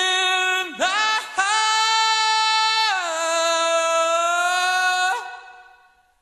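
A single voice singing long held notes with no accompaniment, broken by two short breaths in the first second and a half. The notes step up in pitch, drop lower at about three seconds, and end just after five seconds.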